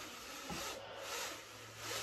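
Horizontal window blind being lowered by its pull cord: a continuous rasping hiss of the cord running through the headrail and the slats moving, swelling about halfway through and again near the end.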